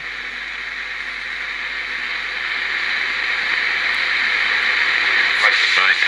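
Steady hiss from an AM car radio's speaker as it receives 2-metre FM through a homebrew converter by slope detection, with no voice on the channel; the noise grows slowly louder. Near the end a voice starts to come through the radio.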